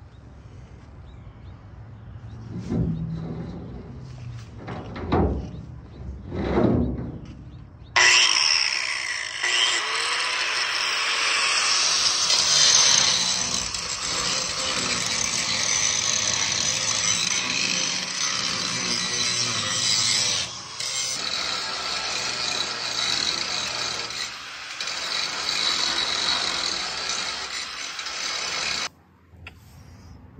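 Angle grinder grinding down the metal stubs left from cut-off toolboxes on a diamond-plate truck flatbed. It starts loud and continuous about eight seconds in, after some quieter, brief sounds, with short breaks along the way, and cuts off shortly before the end.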